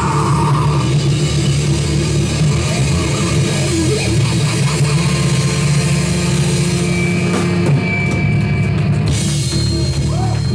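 Live heavy metal band playing loud and steady: distorted electric guitars and bass over a drum kit. A vocal line ends about a second in and the band plays on instrumentally, with the cymbals briefly thinning out near the end.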